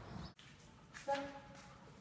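Outdoor background noise that stops abruptly at an edit, then quiet indoor room tone with one short spoken command from a woman about a second in.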